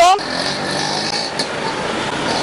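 A motor vehicle's engine running steadily at its smoking exhaust.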